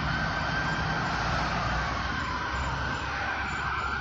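Police siren sounding in the distance over a low, steady rumble of vehicles, as police cars approach escorting an oversize load.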